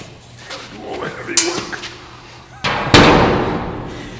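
A large solid steel blanking plate slammed against the flanged outlet of a running centrifugal fan's test duct: one loud impact about three seconds in that fades out over a second. The fan's steady low hum runs underneath.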